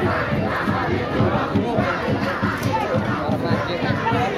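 Crowd of football spectators shouting together, a steady din of many voices.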